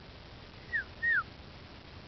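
Dog whining: two short high-pitched whimpers, each falling in pitch, the second slightly longer and louder.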